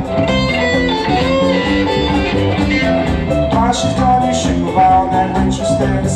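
Live rock band playing an instrumental passage: electric guitar lines over bass and drums, with cymbal strokes in the second half.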